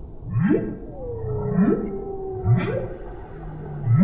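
Humpback whale song: about four rising whoops about a second apart, each sweeping up from low to mid pitch, with a long held tone that slides down and then levels off between the first and third.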